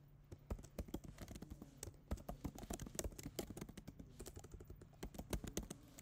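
Computer keyboard being typed on: a run of quick, irregular key clicks, fairly faint.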